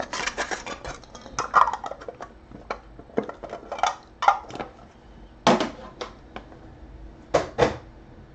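Clear hard-plastic trading-card cases and cards being handled and set down, a series of sharp plastic clicks and taps, the loudest one about five and a half seconds in and two close together near the end.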